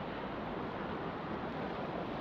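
Steady rush of a mountain river running over rocks and boulders.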